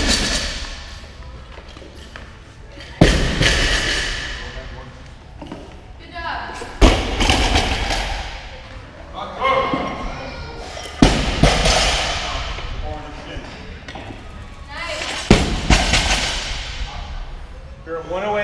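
Loaded barbells with rubber bumper plates hitting a rubber gym floor at the end of deadlift reps: four heavy thuds, roughly four seconds apart, each with a clanging ring that echoes through a large hall.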